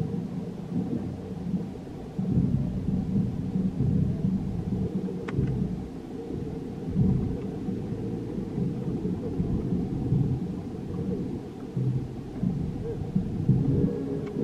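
Low, uneven rumble of wind buffeting the camera microphone outdoors, rising and falling in gusts, with one sharp tick about five seconds in.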